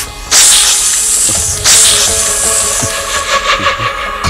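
Film sound effects: two sharp hissing whooshes, about a second and a half apart, each tailing off, over background music.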